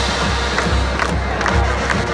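Stadium crowd cheering and shouting over a marching band playing, with a steady low beat underneath.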